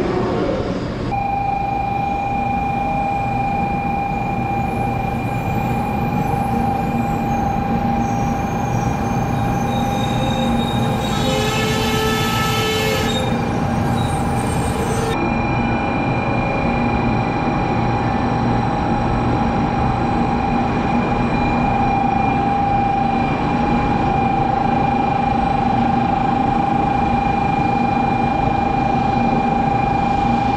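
An N700 series Shinkansen pulling slowly into the platform: a steady low rumble with a steady high whine over it, and a brief horn-like call about twelve seconds in.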